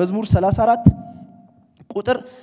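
A man preaching in Amharic for about a second, with three dull low thumps among his words, then a short pause before he speaks again.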